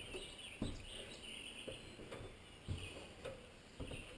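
Wild birds chirping faintly, in short repeated calls, with a few soft thumps now and then.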